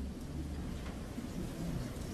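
Faint room noise in a pause in speech: a steady low rumble with a light hiss, and no distinct sounds.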